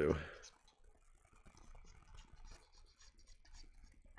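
Faint, irregular scratching of a glue applicator tip rubbing along the edges of a plastic model kit's hull, with light handling of the plastic parts.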